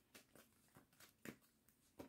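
Near silence with a few faint, short clicks of a tarot deck being handled in the hands, the clearest a little over a second in.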